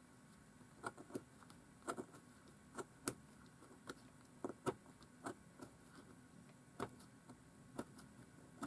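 Craft knife blade paring small slivers from the tip of a wooden twig dip-pen nib: about a dozen short, sharp clicks at uneven intervals as the blade nicks through the wood.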